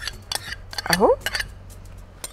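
A spoon clicking and scraping against a glass bowl, several light clinks, as gelatin is scraped out of the bowl into a pot.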